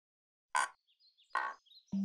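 Cartoon outdoor ambience sound effects: two short raspy animal-like calls about a second apart, with faint high chirps between them.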